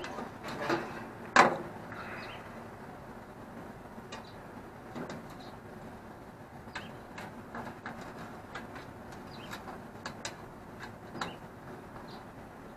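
Metal skewers and a fork clinking and scraping against a metal plate as kebabs are handled and taken off the skewer. There is one sharp clink about a second and a half in, then scattered lighter clicks.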